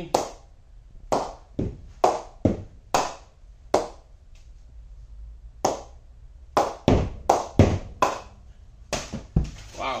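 Cricket ball bounced again and again off the face of a new grade 1 English willow SS Master 9000 cricket bat. There are about fifteen sharp knocks, each with a short ringing ping, mostly two or three a second, with a pause of nearly two seconds in the middle. The bat is not yet knocked in.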